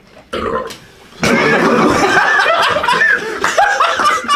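A person belching after gulping soda, then a group bursting into loud laughter and shouting about a second in.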